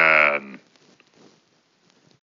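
A held, bleat-like cry at one steady pitch that stops about half a second in, leaving only faint hiss.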